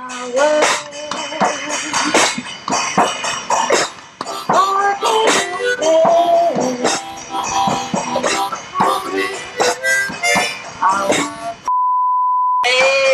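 Harmonica played into a microphone, unaccompanied, in short uneven phrases of single notes and chords. Near the end it cuts off abruptly to a steady high test tone.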